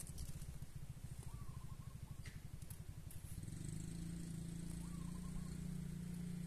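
A small engine running steadily at a distance, its hum growing fuller about three seconds in, with two faint short chirps.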